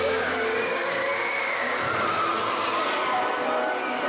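Water fountain show: jets and mist spraying with a steady hiss, over a show soundtrack with sustained notes and a tone that glides up and down in the middle.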